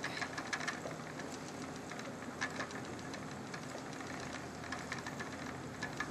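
Sequoia spinning wheel running under the treadle as yarn is spun: a faint, steady whir of the flyer with light, irregular mechanical clicking and ticking several times a second.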